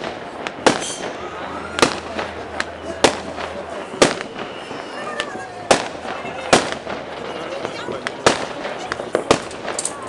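Fireworks going off across a town: about ten sharp, irregular bangs, roughly one a second, over a continuous crackling background.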